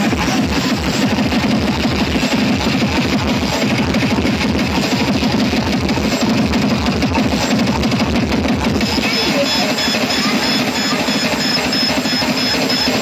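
Loud electronic dance music played at high volume through large DJ sound-system speaker stacks, with a heavy, steady beat. A repeating high-pitched tone joins the music about nine seconds in.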